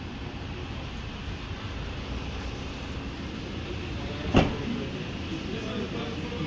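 The tailgate of a Honda Civic hatchback being shut, a single loud thud about four seconds in, over a steady low rumble.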